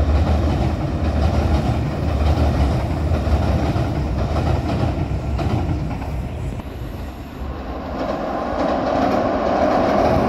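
An electric express train rumbling over a steel girder railway bridge, wheels clacking on the rails, fading away around six to seven seconds in. About eight seconds in, a second electric train comes onto the bridge and its rumble grows louder to the end.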